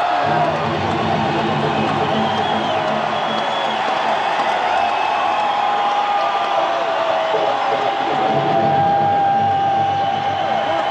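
Live rock band music with long held notes that slowly bend in pitch, over a crowd cheering and whooping.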